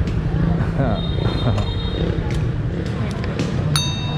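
A man laughs briefly against steady street traffic noise. A thin high electronic tone sounds for about a second, and a sharp click with a brighter electronic chime comes near the end.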